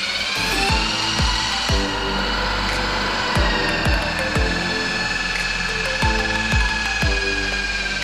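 Corded electric impact drill spinning a foam buffing pad across a car's painted bonnet, its motor giving a steady high whine that sags slightly in pitch and cuts off suddenly at the end. The pad is working in liquid polish, the polishing stage after compound.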